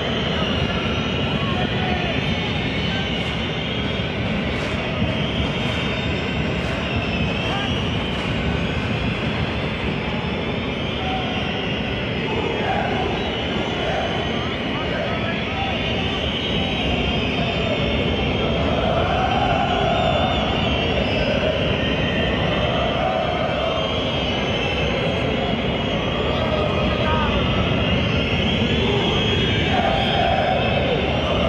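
Football stadium crowd: a steady din of many fans with chanting and singing that wavers in pitch, swelling somewhat in the last third.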